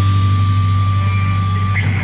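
Rock music holding one sustained low chord without drums, with a thin steady high tone over it that stops near the end.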